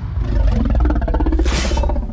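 Film-trailer music and sound design: a heavy low rumble throughout, with a whoosh about one and a half seconds in.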